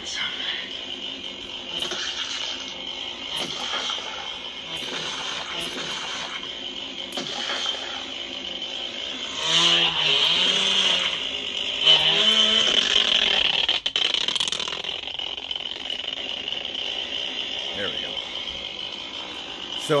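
Lightsaber sound-font audio from a Proffie saber's speaker, playing the Army of Darkness font: a steady hum that swells each time the blade is swung. A louder effect from about ten to thirteen seconds in carries a pitched, voice-like sound, in keeping with a font put together from film clips.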